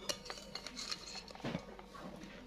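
Faint taps and scrapes of a spoon against a glass mixing bowl as flour is tipped in and stirred into yeast water, with a soft knock about one and a half seconds in.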